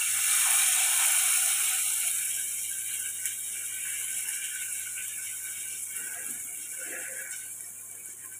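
Curry leaves spluttering and sizzling in hot oil with garlic in a steel pot, a crackling hiss that is loudest as they go in and slowly dies down.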